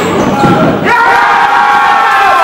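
Players shouting and calling out, long held shouts for most of it, with a rubber dodgeball bouncing on the wooden court floor.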